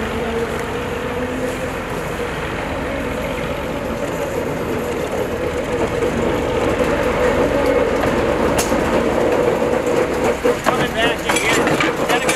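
Small GE 25-ton diesel switcher rolling slowly toward and past, its engine running with a steady drone that grows louder as it nears. In the last couple of seconds its wheels click over the rail joints as it goes by.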